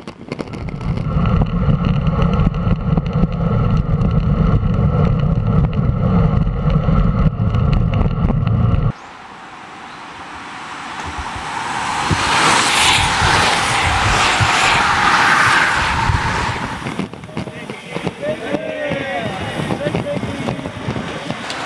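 Heavy wind rumble on a camera riding in a pack of road racing bicycles, cut off abruptly about nine seconds in. Then a pack of road bicycles passes close by: a hiss of tyres and freewheels that swells, peaks and fades over about five seconds.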